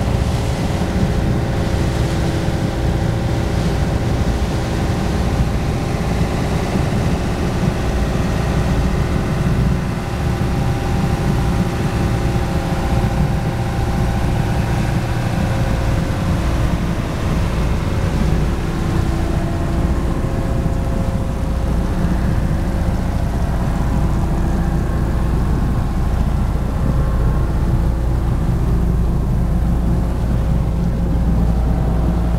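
A small wooden fishing boat's inboard engine running steadily under way, with a constant low hum, and water rushing along the hull.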